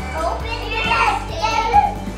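Young children's high voices exclaiming and chattering over steady background music.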